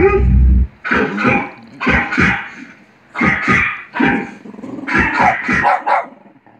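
Dog barking repeatedly in short runs of two or three sharp barks, about a dozen in all. A brief low rumble at the very start.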